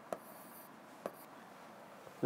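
Faint pen strokes on a writing board: two light taps about a second apart, with a soft scratch after the first.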